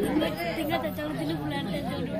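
Speech: several voices talking over one another, the spoken stage dialogue of therukoothu folk-theatre actors.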